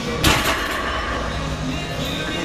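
Loaded deadlift barbell set down on the floor: one sharp clank of the weight plates about a quarter second in, ringing briefly, over background music.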